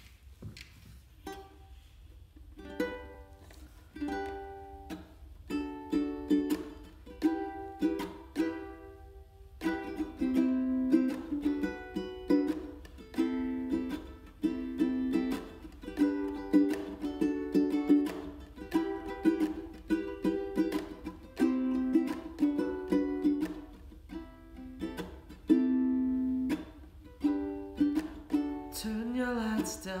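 Ukulele strummed solo: a few sparse chords at first, then about ten seconds in a fuller, steady rhythmic strumming pattern. A man's singing voice comes in near the end.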